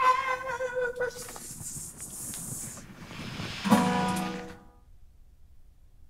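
A man singing loudly to his own acoustic guitar: a long held note, a strummed passage, then a final lower held note that stops about four and a half seconds in, ending the song.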